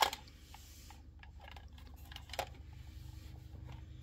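Hands handling a plastic Opee Sea Killer toy figure: a sharp knock at the very start, another short click about two and a half seconds in, and faint scattered clicks of plastic between them, over a low steady hum.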